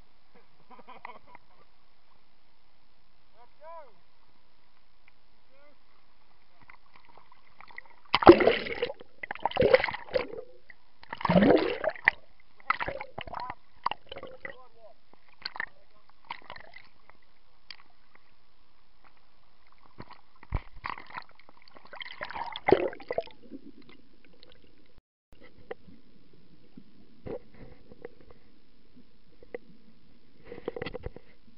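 Water sloshing and splashing around a waterproof camera held at the surface, muffled as it dips under. It comes in loud irregular bursts about eight to twelve seconds in and again around twenty-two seconds, with quiet stretches and scattered clicks between.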